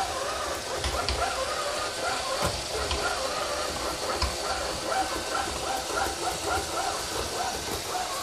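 Aldi Stirling robot vacuum cleaner running on a hardwood floor: a steady whir of its suction motor and brushes with a wavering motor whine, and a few low knocks as it works around a chair leg.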